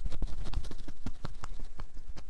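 Hands striking a man's back through a cotton T-shirt in percussive tapotement massage strokes: a quick, uneven run of soft slaps and taps, about six a second.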